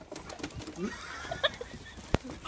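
A person laughing in short, breathy bursts, with a few light knocks and clicks.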